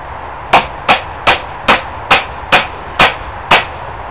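Eight quick, sharp hammer blows, evenly spaced a little under half a second apart.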